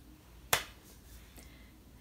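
A single sharp hand clap about half a second in, against quiet room tone.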